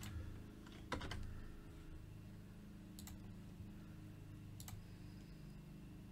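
A few separate computer keyboard keystrokes, sharp taps spaced a second or more apart, over a faint low steady hum.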